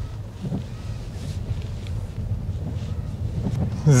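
Low, steady rumble inside the cabin of a Genesis G80 Electrified electric saloon pulling away slowly on a wet road: tyre and road noise, with no engine sound.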